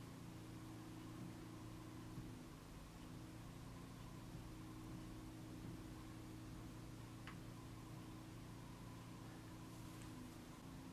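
Faint, steady low engine hum from a neighbour's firewood cutting, with a slight dip a couple of seconds in and one small click about seven seconds in.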